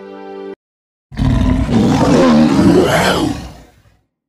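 Background music cuts off, and about a second in a loud lion roar begins, lasting about two and a half seconds before fading out.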